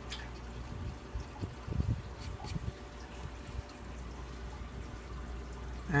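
Scratch-off lottery ticket being scratched and handled: a few faint scrapes and taps about two seconds in, over a low steady hum.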